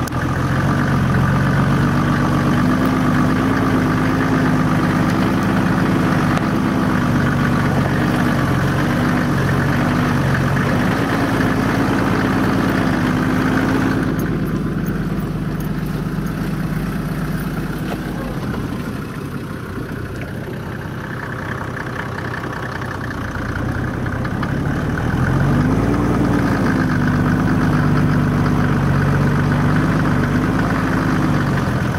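Mercedes G300's engine running at low speed, heard from inside the cabin. Its note rises and falls a few times and drops quieter for several seconds past the middle.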